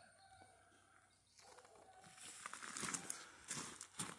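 Quiet outdoor ambience with faint, distant bird and farm-animal calls, and a few soft rustling or crunching sounds in the second half.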